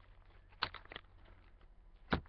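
Faint rustling and a few light clicks of trading cards and their packaging being handled and shuffled through, with one clearer click a little over half a second in.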